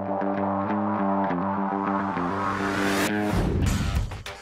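Electronic background music: steady synthesizer chords changing in an even rhythm, with a rising whoosh that builds and breaks off about three seconds in.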